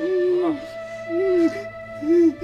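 A woman wailing in grief: long, wavering cries that break off and start again, over sustained background music notes.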